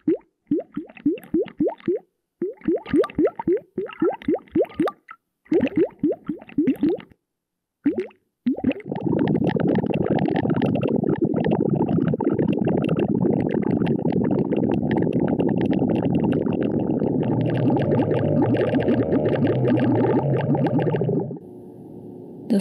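Hydrophone recording of water in a container: quick clusters of plops, each with an upward-gliding pitch, for about eight seconds. Then a dense, muffled bubbling texture, the water sound transformed by a Morphagene granular synthesizer module, that cuts off suddenly about a second before the end.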